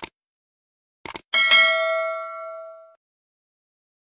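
Subscribe-button animation sound effect: a click, then two quick clicks about a second in, followed by a bright notification-bell ding that rings and fades away over about a second and a half.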